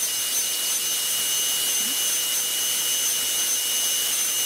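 High-speed rotary carving tool running steadily: a constant high-pitched whine over hiss.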